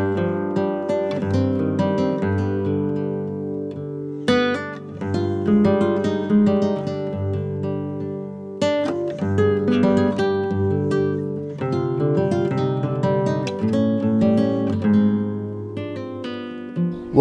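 Background music on acoustic guitar, mixing plucked notes and strummed chords, with two louder chord strums, one about a quarter of the way in and one about halfway.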